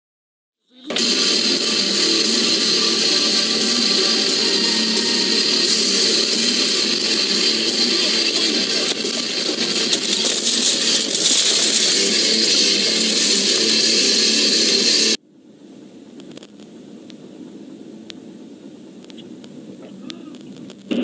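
Loud, harsh, unbroken rushing noise on a car dashcam recording. It starts about a second in and cuts off abruptly about fifteen seconds in, leaving fainter steady road noise.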